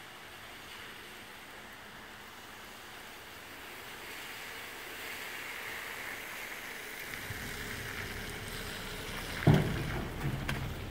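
A garbage truck working a rain-wet street: a steady hiss that slowly grows louder, with a low rumble joining about seven seconds in. A single loud thump near the end is the loudest sound.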